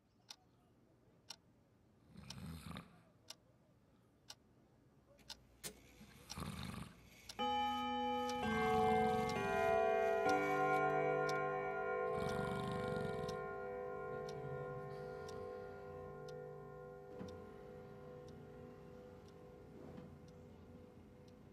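Pendulum wall clock ticking about once a second, with a man snoring in a few long, rough breaths. About seven seconds in, the clock starts chiming: a run of notes, each ringing on and slowly fading.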